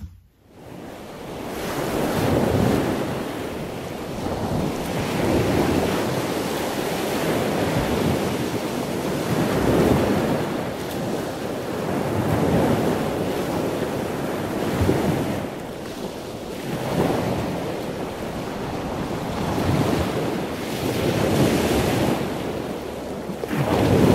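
Loud rushing noise that swells and fades in slow surges about every two to three seconds.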